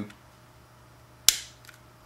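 A plastic wire connector on a robot kit's battery module snapping into its holder: one sharp click a little past a second in, over quiet room tone.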